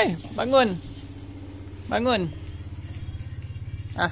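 Three short voiced "ah" calls, each rising then falling in pitch: one at the start, one about half a second in and one about two seconds in. Under them runs a steady low hum with a fine rapid pulse.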